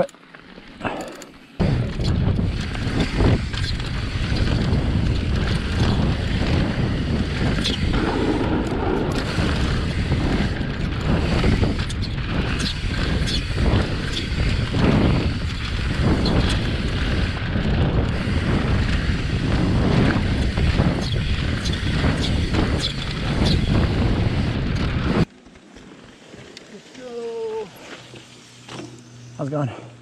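Downhill mountain bike riding fast down a rough dirt trail, heard through a GoPro with steady wind rumble on the microphone, tyre noise and frequent knocks and rattles from the bike over bumps. It cuts off abruptly near the end, leaving quieter talk.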